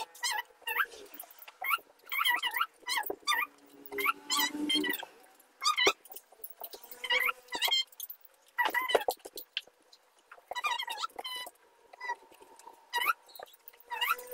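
Marker squeaking on a whiteboard in a quick, irregular run of short strokes as words are written.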